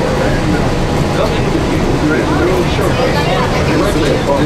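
Monorail car running, a steady low rumble from the train in motion, under indistinct chatter of passengers' voices.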